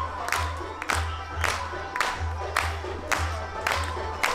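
Upbeat dance music with a steady, strong beat of about three hits a second over a deep bass, with a crowd clapping along.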